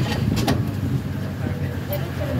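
A steady low rumble of a running vehicle under indistinct voices, with two short clicks about half a second in.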